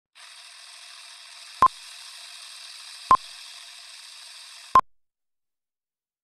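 Old-film countdown-leader sound effect: a steady film-projector rattle with hiss, broken by three short, loud beeps about a second and a half apart. It cuts off a little before the end.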